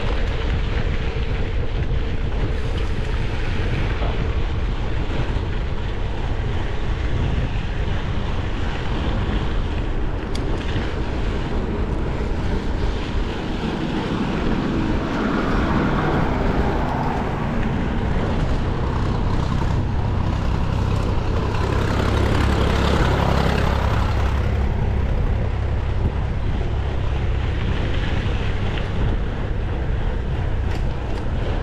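Wind rushing over the microphone of a bike-mounted camera, with mountain bike tyres rolling on a dirt road. The noise runs steadily, with two louder stretches about halfway through and a few seconds later.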